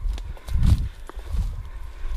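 Footsteps of a person walking through pine woods over leaf litter and brush, heard through a body-worn camera as dull thuds about every two-thirds of a second, with small crackles and twig snaps between them.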